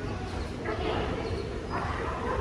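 Short wordless voice sounds, once about half a second in and again near the end, over a steady low hum.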